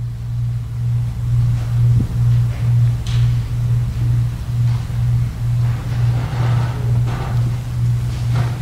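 A loud, steady low electronic drone, pulsing about two to three times a second, with faint voices of people talking in the background.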